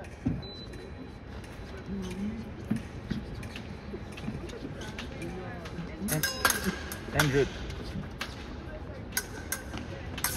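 Epee blades clicking against each other and fencers' footwork on the piste, with faint voices of spectators throughout; a quick flurry of sharp clicks and a raised voice come about six to seven and a half seconds in.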